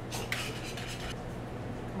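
A few quick scrapes and clinks of a utensil against a bowl during the first second, then only a low steady hum.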